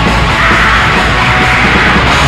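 Raw black metal recording: a loud, dense, unbroken wall of distorted guitars and drums with harsh yelled vocals over it.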